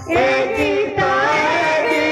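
Women singing an Odia devotional kirtan song through a microphone, with a barrel-shaped hand drum beating under the voices.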